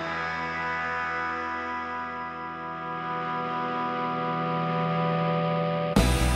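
Instrumental rock intro: a distorted electric guitar chord is held and swells slowly, steady sustained notes with no drums, until the full band with drums crashes in at the very end.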